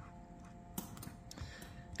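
A few faint, irregular light ticks around the middle, from the nozzle of a Stickles glitter glue squeeze bottle tapping and dabbing on a coloring book page, over a faint steady hum.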